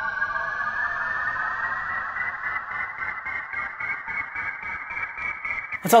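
Poizone synthesizer's SFX preset 'Red Alert Chill' sounding one held note: a synthesized tone that rises in pitch over the first two seconds, then holds steady with a faint regular pulse.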